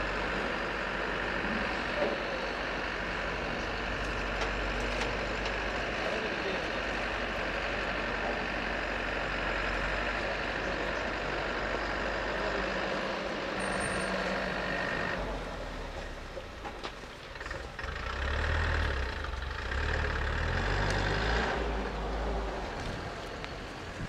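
Diesel engine of a JCB backhoe loader running steadily, with voices mixed in. Its sound changes about 15 seconds in and the low rumble grows louder over the last few seconds.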